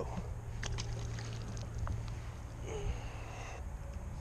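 Steady low rumble of wind on the microphone, with a few faint clicks and a brief rustle as a spinning rod and reel are handled.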